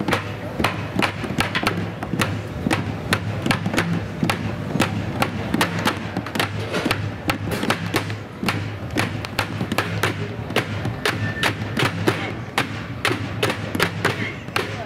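Found-object percussion: drumsticks beating on a plastic water-cooler jug, barrels and a trash-can lid in a fast, steady groove of sharp strikes, several a second.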